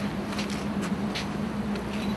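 Outdoor street ambience: a steady rush of traffic noise with a constant low hum and a couple of faint ticks.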